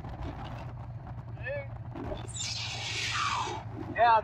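Harley-Davidson V-twin motorcycle engine running steadily at low road speed. A rush of noise swells about two seconds in and dies away about a second later.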